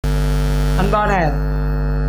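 Loud, steady electrical mains hum on the voice recording that starts abruptly. A brief voice sound comes about a second in.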